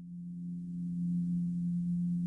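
A steady, low musical drone of a few held tones, growing louder over the first second.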